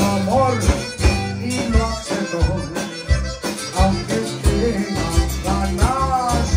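Live conjunto band music: a button accordion carrying the melody over electric bass and a steady drum beat, with Latin-American dance rhythm.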